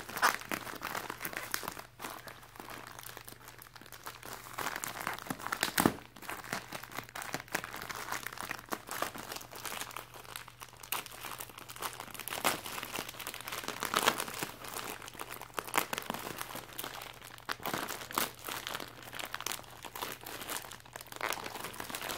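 Plastic poly shipping mailer being worked open by hand: the bag crinkling and rustling in irregular bursts as its packing tape is peeled back, with a few sharper crackles along the way.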